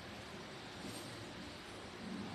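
Faint steady hiss of room tone, with no distinct sound standing out.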